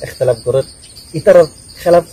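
Crickets chirping in a steady pulsing rhythm behind a man's short bursts of speech, with a faint constant high-pitched tone.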